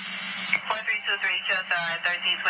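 Voice chatter over a two-way radio, thin and narrow-band, with a steady low hum beneath. A short hiss of static comes first, and the voice begins about half a second in.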